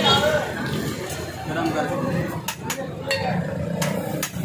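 Background chatter of men's voices, with about four sharp metal clinks in the second half as a knife strikes the steel griddle top while burgers are cut.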